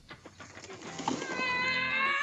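A child's high-pitched scream, starting about a second in and held for about a second, rising slightly then falling away, after a few faint knocks and rustles of trash.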